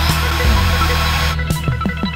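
Background music, with about a second and a half of harsh noise from a power drill boring into chipboard near the start, which stops abruptly.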